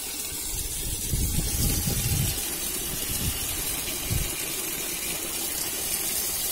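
Tap water gushing from an outdoor faucet into a plastic bucket of brinjals, a steady splashing pour. A few low thumps come about a second in and again near four seconds.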